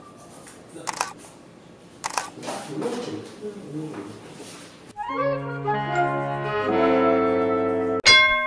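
Smartphone camera shutter clicks, about a second apart. From about five seconds in, a short brass-and-woodwind musical phrase of held chords.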